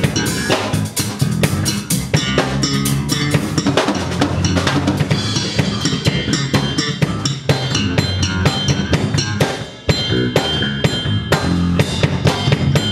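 Live jam of electric bass guitars over a drum kit: busy drum hits with low bass lines underneath, and a brief drop in the playing near the end.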